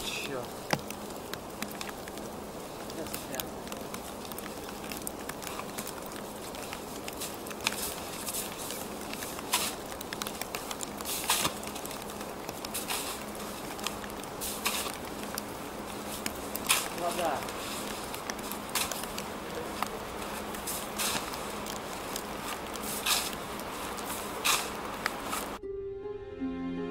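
A shovel digging into and throwing deep snow to free a bicycle stuck in it: irregular crunches and scrapes over a steady low hum. Music cuts in abruptly at the very end.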